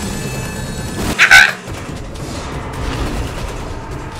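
Film soundtrack of a tiger fight scene: music and low rumbling effects, broken about a second in by one brief, loud, high-pitched cry.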